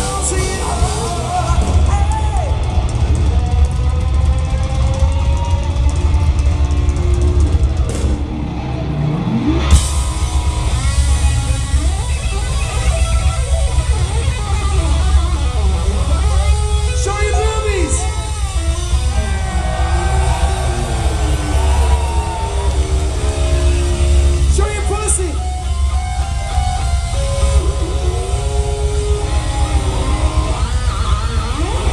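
Glam metal band playing live at loud volume: distorted electric guitar over drum kit and bass, recorded from among the audience with a heavy low boom. The top end briefly thins out about eight seconds in.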